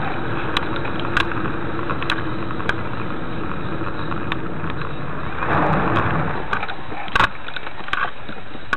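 Steady engine and road noise of a car driving in city traffic, heard from inside the cabin through the dashcam's microphone, with a few scattered small clicks.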